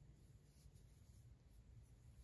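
Near silence, with the faint scratchy rubbing of a metal crochet hook drawing yarn through stitches as half double crochet is worked.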